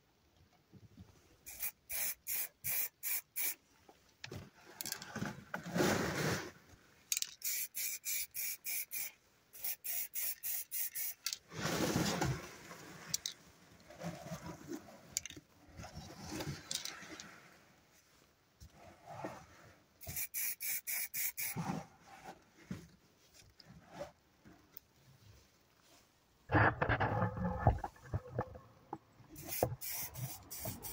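Aerosol spray-paint can sprayed in runs of short, quick puffs, five or six at a time, with handling and rubbing noise between the runs and a louder bout of handling near the end.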